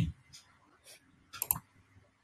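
Computer mouse clicks: a few faint clicks, then a sharper double click about a second and a half in.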